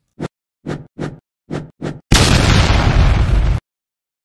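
Logo sound effect for the outro: five short hits in quick succession, then a loud burst of noise lasting about a second and a half that cuts off suddenly.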